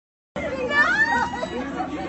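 People talking, starting about a third of a second in.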